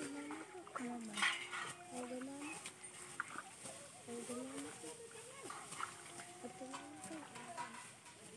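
Voices of people talking in the field, pitched and rising and falling throughout, with scattered sharp clicks and rustles from rice stalks being cut and handled during a hand harvest.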